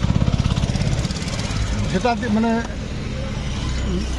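Car engine running, heard from inside the cabin as a low, steady hum with a fast, even pulsing through the first second and a half.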